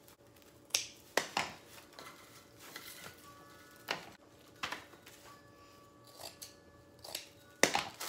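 Scissors snipping through rolled plastic deco mesh: a few sharp cuts in the first second and a half. Scattered clicks and rustles follow as the cut mesh and the scissors are handled.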